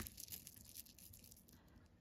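A sharp click right at the start, then faint scattered ticks and a light rustle as a Pandora charm bracelet is turned in the fingers, its metal charms and beads knocking together.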